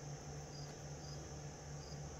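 Faint cricket chirping, short high chirps about twice a second, over the steady low sound of a fan.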